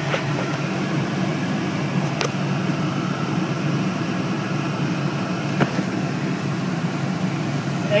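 Inside the cabin of a 2008 Ford Crown Victoria Police Interceptor: its 4.6-litre V8 idles while the air-conditioning blower runs, a steady hum and rush of air. Two faint clicks come about two and five and a half seconds in.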